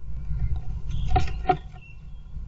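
Great tit moving about inside a wooden nest box: scratching and rustling against the box and nesting material over a low rumble, with two sharp scratchy clicks about a second in.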